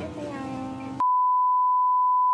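Background music with held notes, then about halfway through it cuts off and a steady electronic bleep tone takes over at one unchanging pitch, with nothing else heard beneath it.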